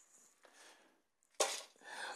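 Quiet room tone, with one brief, faint, sharp noise about one and a half seconds in.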